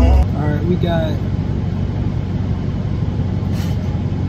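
Music stops abruptly just after the start, leaving a steady low hum inside a car cabin, with a brief faint murmur of voices in the first second.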